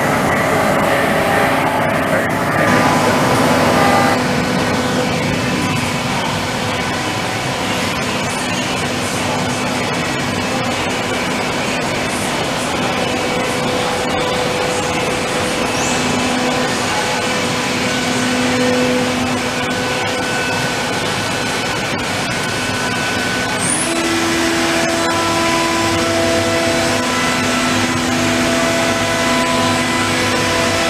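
High-pressure through-spindle coolant spraying inside a Fanuc Robodrill machining centre's enclosure for the first few seconds. Dense, steady machine-shop noise from adjacent running machines continues throughout, with several steady tones coming and going.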